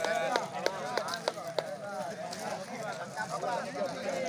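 A crowd of men talking over one another, no single voice clear, with several sharp clicks in the first second and a half.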